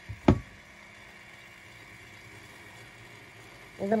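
A single sharp knock about a third of a second in, followed by a faint, steady low hum.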